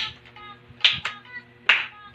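Three sharp hand claps in a steady beat, a little under a second apart, over background music with a light melody.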